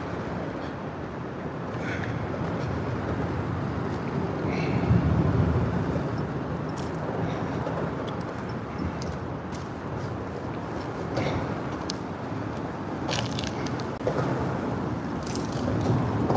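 Steady rumble of road traffic from the highway overhead, swelling for a moment about five seconds in, with a few faint footsteps scuffing on dirt.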